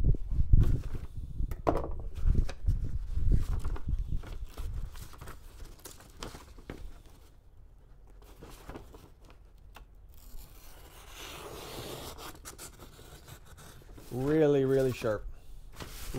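A freshly sharpened brisket slicing knife drawn through a sheet of paper, making a soft hiss a few seconds before the end. It is a paper-cut test of the edge, which slices cleanly: really, really sharp. Low rumbling and handling noise come early, and a brief vocal sound comes near the end.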